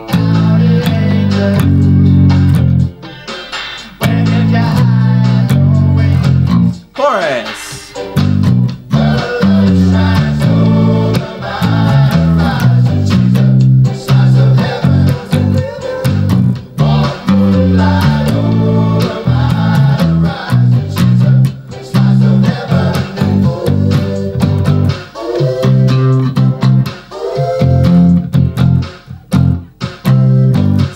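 Electric bass guitar played fingerstyle, a driving bass line of repeated notes, over the recording of the song with its guitar and vocal parts. The bass drops out briefly a few seconds in and again around the middle before coming back in.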